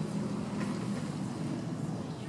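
Steady low outdoor rumble, like street background noise, with no distinct events.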